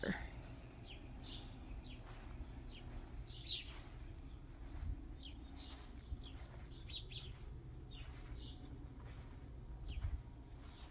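Wild birds chirping: short, high chirps scattered every second or so, over a steady low rumble.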